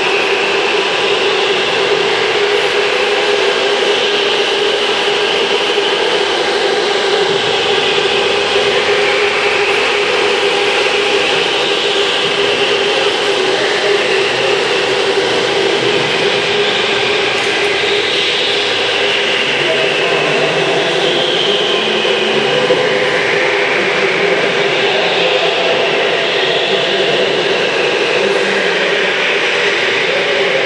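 Electric go-karts running on an indoor concrete track: a steady hum under higher motor whines that rise and fall as karts accelerate and pass.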